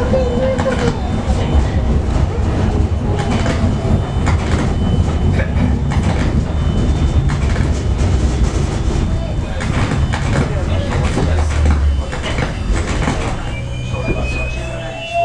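Budapest–Szentendre HÉV suburban train running along the line, heard from inside the carriage: a steady low rumble with irregular clicking from the wheels over the rail joints.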